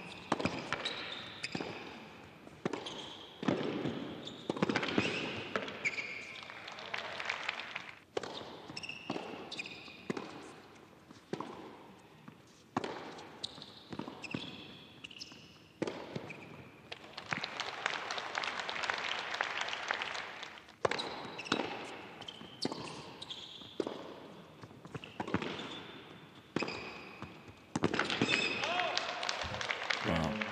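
Tennis rally on an indoor hard court: the ball is struck by rackets and bounces in sharp hits about a second apart, with short high shoe squeaks on the court between shots.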